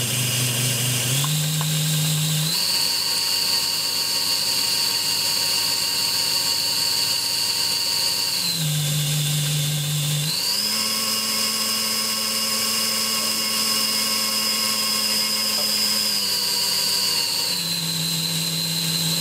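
The small DC motor and gear train of an inkjet printer's ink pump whining as it runs. The whine rises in pitch about two seconds in, drops back about eight seconds in, rises again about ten seconds in and drops back near the end, as the motor's supply is turned up and down.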